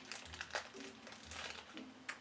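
A small mystery pin blind bag faintly crinkling in the fingers as it is being opened, in a run of quick, light crackles.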